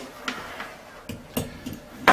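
A few light taps and clicks as a soldering iron is set down in its stand, the sharpest about a second and a half in.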